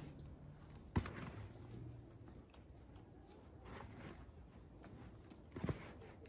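Faint rustling and scraping of peat-moss seed-starting mix being stirred by hand in a plastic tote, with two sharp knocks, one about a second in and one near the end.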